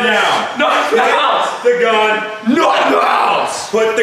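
Loud voices that the speech recogniser could not make out into words.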